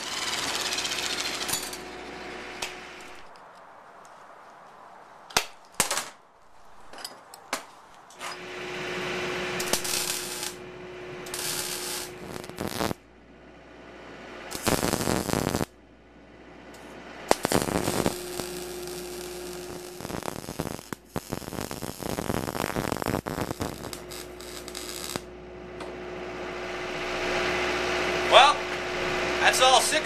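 MIG welder crackling in a string of bursts a few seconds long, with a steady hum under each, as steel caps are welded onto the ends of bent steel-tube rockers. A few sharp clicks fall in the quieter gaps between the bursts.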